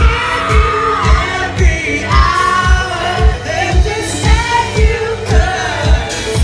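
A live band playing loud pop music: a lead singer over a steady kick drum that beats about twice a second.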